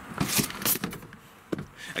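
Rear seat-back release of a Nissan Murano being pulled, with a few sharp clicks and knocks in the first second as the latch trips and the seat back gives, and another knock about a second and a half in.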